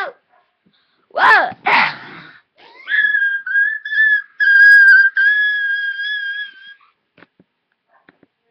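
Two short shrieks about a second in, then a long, shrill, high-pitched scream held at a nearly steady pitch for about four seconds, with a few brief breaks.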